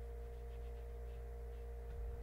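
Steady electrical hum with a steady higher tone running over it, and faint soft strokes of a paintbrush on paper.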